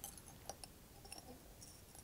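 Near silence with a few faint, light clicks and taps from a dropper and small glassware being handled.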